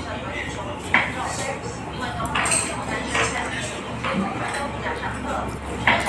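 Chopsticks clinking against a plate of pan-fried dumplings during a meal, with two sharp clicks, one about a second in and one near the end.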